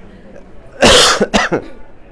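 A person coughing: one loud cough followed quickly by a shorter second one.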